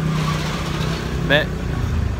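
A vehicle engine running with a steady low drone. A short voice sound comes about a second and a half in.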